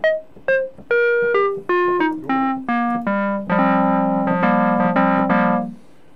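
Roland Boutique JU-06 synthesizer preset played from a keyboard: a run of about nine bright single notes stepping down in pitch, then a low chord struck again several times that stops just before the end.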